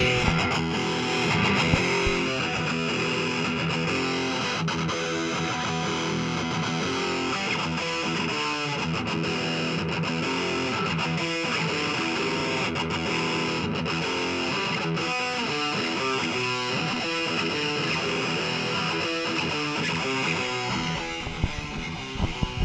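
Electric guitar played through an amplifier, a riff of quickly changing notes and chords that starts sharply.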